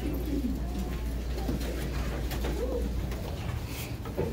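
Classroom bustle: an indistinct murmur of students' voices with shuffling and scattered small knocks, over a low steady hum. Bumps from the recording phone being handled come near the end.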